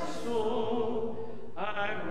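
Slow worship singing, long notes held and gently wavering, with a soft s-sound at the start.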